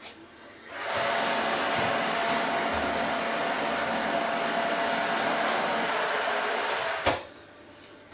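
Hot water pouring steadily into a metal roasting tin around glass dishes, filling it as a water bath. It runs for about six seconds, starting about a second in and stopping abruptly.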